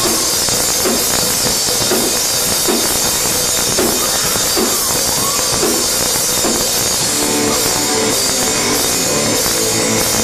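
Live rock band playing loudly on electric guitars, bass and drum kit. A riff of short repeated guitar notes stands out from about seven seconds in.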